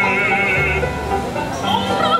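Operatic singing with a wide, fast vibrato over piano accompaniment with sustained low notes. One sung phrase ends just under a second in, and a new phrase begins near the end.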